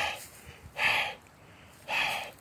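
A man breathing hard and audibly, three breaths about a second apart.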